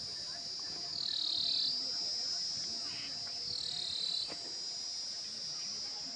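Steady high-pitched insect buzzing, dipping briefly in pitch about every two and a half seconds.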